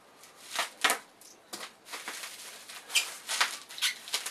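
Plastic packing wrap rustling and crinkling in irregular bursts as a bottle is unwrapped by hand.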